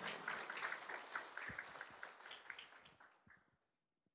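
A small group applauding, the clapping thinning out and stopping about three seconds in.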